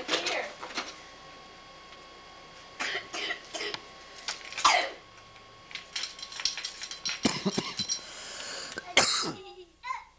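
Indistinct children's voices and short exclamations in a room, with a cough, and scattered clicks and knocks from toys being handled.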